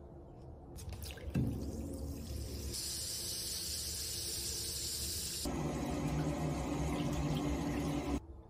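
A bath bomb dropped into bathwater: a splash about a second and a half in, then fizzing and bubbling as it dissolves. There is a bright hiss for a few seconds in the middle, then lower bubbling.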